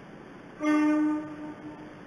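A Chiyoda Line train's horn sounds one short, steady note just over half a second in. It is loud for about half a second, then fades away.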